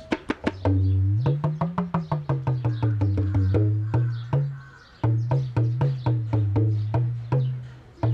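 Tabla played with both drums together: quick, sharp, ringing strokes on the small right-hand dayan over the deep bass of the left-hand bayan, whose pitch bends up and back down. There is a brief pause about five seconds in, then the playing resumes.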